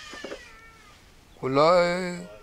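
A man's voice holding one long, steady-pitched drawn-out syllable for about a second, starting about a second and a half in, after a faint falling tone at the start.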